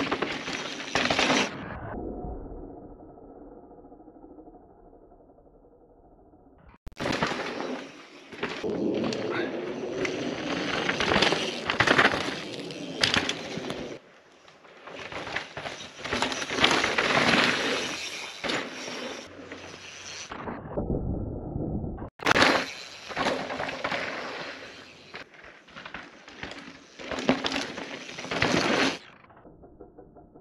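Mountain bike tyres crunching and rattling over a dry dirt and rock trail as riders pass, in several passes broken by abrupt cuts, with quieter muffled stretches between them.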